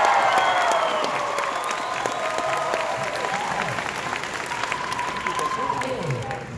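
Audience applauding and cheering. The cheering is loudest at the start and dies down over the first few seconds while the clapping goes on.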